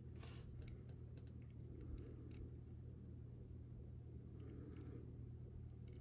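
Quiet room hum with a few faint light clicks and taps as a small metal edge-paint brush applicator is dipped into a plastic cup of edge paint, the brightest click about a third of a second in, and a soft brushing swish near the end.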